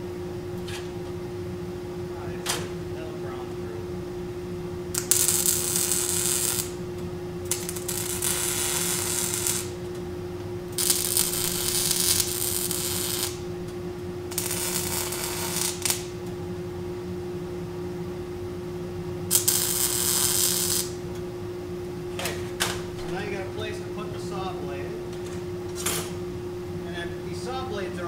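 Stick-welding arc tacking a steel saw blade onto a shovel blade: five separate welds, each a second and a half to two and a half seconds of loud arc hiss, under a steady hum.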